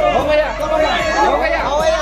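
Several people talking at once, their voices overlapping in busy group chatter.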